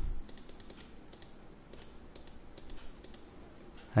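Light, irregular clicks of a computer mouse, a dozen or so over a few seconds, as stacked elements are deleted one after another.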